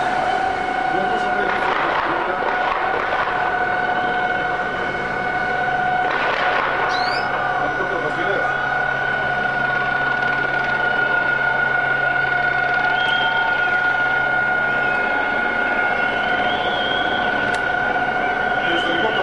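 A steady, unchanging high-pitched tone sounds throughout, with bursts of distant voices about two seconds and six seconds in.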